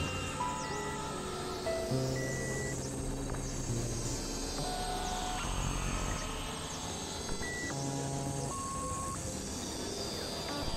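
Experimental electronic synthesizer music: scattered steady notes that start and stop at shifting pitches, with low held notes underneath, over a noisy wash crossed by sweeping high glides.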